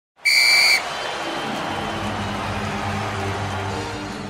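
A loud whistle blast lasting about half a second at the very start, then a steady hiss with low sustained intro-music notes coming in under it.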